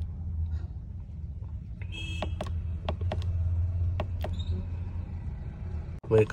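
Ashok Leyland truck's diesel engine idling with a steady low hum, heard inside the cab, with a few sharp clicks as the instrument-cluster button is pressed.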